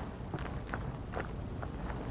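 Rubber spatula folding whipped cream and mini marshmallows through a cranberry salad in a glass bowl: faint, soft strokes about two a second, over a low steady hum.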